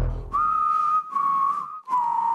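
A whistled tune of long held notes, each a step lower than the last, with a breathy hiss under each note.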